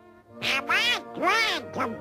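Donald Duck's quacking cartoon voice, starting about half a second in as a run of loud rising-and-falling syllables, over soft orchestral music.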